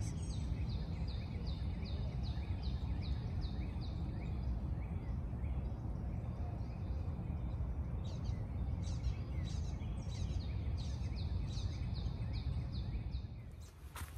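Short high calls repeated evenly about twice a second, with a pause about halfway through, from a small animal calling in the wetland. They sit over a steady low background rumble.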